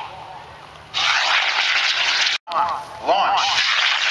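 Model rocket motors firing at lift-off: a loud rushing hiss starts about a second in and is cut off abruptly, then after a loudspeaker voice a second launch begins near the end.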